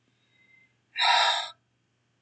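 A woman's sharp intake of breath, a single gasp lasting about half a second, about a second in.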